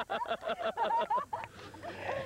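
A person laughing hard in rapid, high-pitched bursts, about six or seven a second, that break off about a second and a half in.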